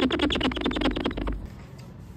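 Alcohol-soaked paper towel scrubbed quickly back and forth on a car's glass rear windshield to rub off paint marker, a fast, even chatter of short squeaky rubs that stops about a second and a half in.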